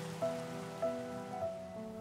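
Soft background music of sustained notes that change about every half second, over a faint, even hiss.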